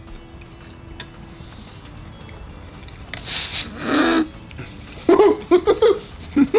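Nonverbal vocal reactions of delight from two men eating: a loud breathy exhale and a short moan about three to four seconds in, then rapid bursts of laughter near the end.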